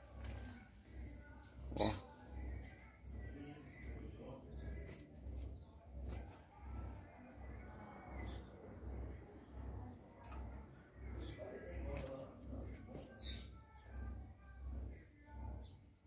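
Faint, scattered bird chirps from a caged seedeater (coleiro), over a low throb that repeats about twice a second. A single click comes about two seconds in.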